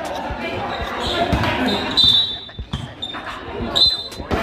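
Basketball dribbled on a concrete court floor, a series of bounces under spectator chatter, with a couple of brief high squeaks.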